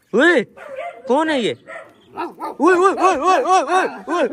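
Repeated short bark-like yelps, a loud one at the start, another about a second in, then a quick run of about six in a row near the end.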